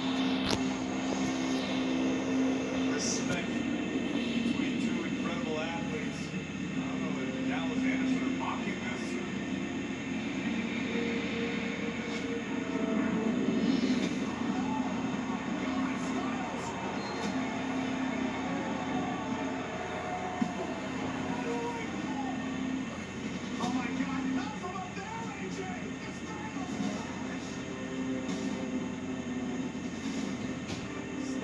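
Television audio picked up off the set's speakers: a wrestling promo package with a music bed of sustained low notes over loud arena crowd noise.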